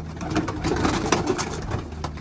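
Domestic pigeons in a small loft: wings flapping and clattering in quick short bursts as a pigeon flutters and is caught by hand, with pigeons cooing underneath.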